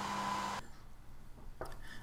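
Steady room hum and hiss, with a faint high electrical tone, that cuts off suddenly about half a second in, leaving a much quieter background.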